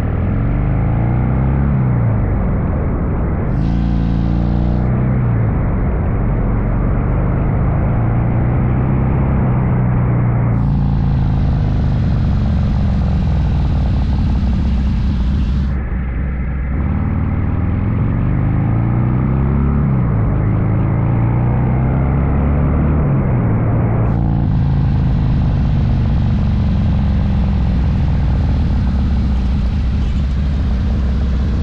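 Harley-Davidson Ironhead Sportster V-twin engine under way, its pitch rising and falling again and again as the bike accelerates and shifts. A hiss of tyres on the wet road comes in briefly about four seconds in, again from about ten to sixteen seconds, and from about twenty-four seconds on.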